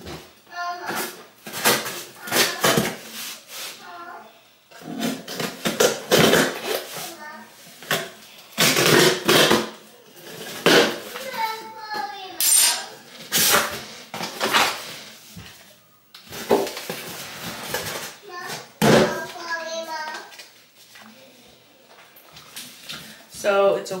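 Cardboard shipping box being opened and unpacked by hand: repeated tearing, scraping and rustling of cardboard, in irregular bursts throughout.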